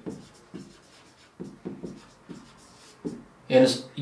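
Marker pen writing on a whiteboard: a run of short, separate strokes as a word is written out.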